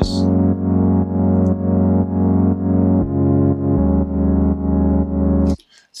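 Soloed Ableton Operator synth pad playing sustained low chords, its high frequencies cut drastically by EQ and its chorus turned down, so it sits dark and mono in the lower mids. The level pulses about twice a second; the chord changes about three seconds in and again near four, and the pad cuts off suddenly shortly before the end.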